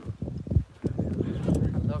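Irregular footsteps on asphalt with low rumble and knocks from a handheld phone microphone while walking. A voice starts near the end.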